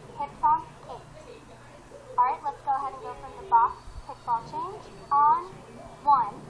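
Speech: a girl's voice calling out, in short bursts, most likely dance counts, over a faint steady low hum.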